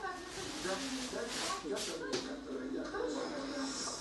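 Family members talking and chattering, heard played back through a television's speaker in a small room, with a few short hissing noises about a second and a half to two seconds in.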